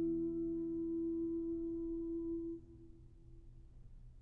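The final held note of a countertenor voice, steady and without vibrato, over the last chord of a lute ringing beneath it. The voice stops abruptly about two and a half seconds in, leaving only faint room tone as the piece ends.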